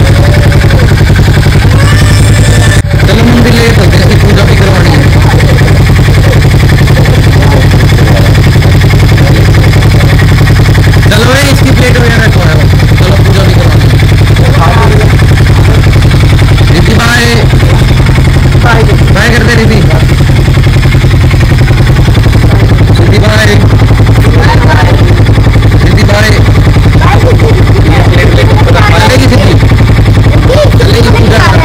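Harley-Davidson X440's single-cylinder engine idling steadily close by, a loud even low drone, with people's voices over it.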